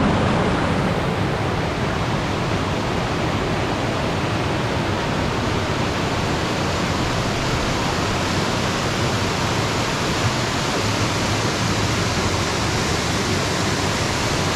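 Spruce Flats Falls, a multi-tiered mountain waterfall, with water rushing over rocks in a steady, even, full-range rush that does not let up.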